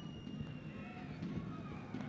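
Faint football-ground ambience under a broadcast: a low, diffuse background of the pitch and stands, with a faint thin tone in the first second and no commentary.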